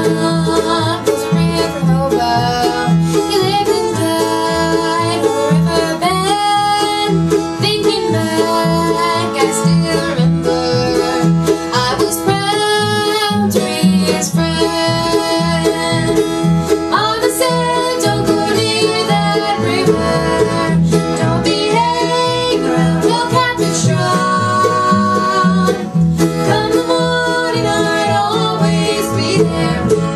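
Acoustic bluegrass string band playing live: fiddle, flat-top acoustic guitar and upright bass with a plucked banjo-like lead, at a steady loud level with an even bass pulse.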